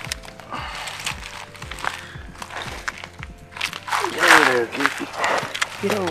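Faint clicks and rustles of handling, then a man's wordless voice with a bending pitch about four seconds in.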